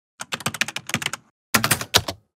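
Quick computer-keyboard typing: a run of keystrokes lasting about a second, a short pause, then a second quick run.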